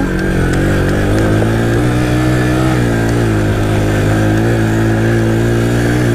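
Yamaha Raptor 700R quad's single-cylinder four-stroke engine running under throttle as it is ridden round a dirt berm, its pitch holding fairly steady with a brief dip about halfway through.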